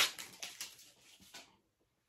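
Adhesive tape being peeled off a cork box: a sharp rip at the start, then scattered crackles that stop dead about a second and a half in.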